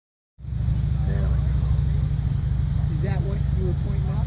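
Wind buffeting the microphone, a loud steady low rumble, with faint voices talking in the background.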